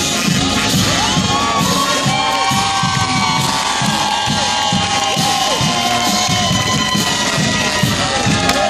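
Marching band drums keep a steady beat while a crowd cheers and yells over it, the shouts rising and falling from about a second in until near the end.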